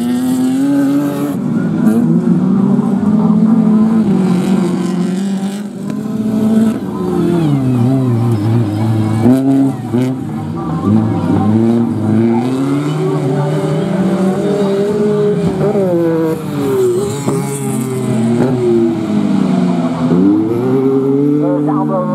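Autocross racing car engine revving hard, its pitch climbing and falling back again many times as the car accelerates and slows around the dirt track.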